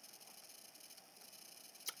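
Near silence: faint room tone, with one brief click just before the end.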